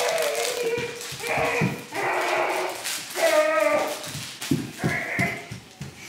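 A puppy growling in play, several short growls with pauses between them, as it tugs on a plush toy.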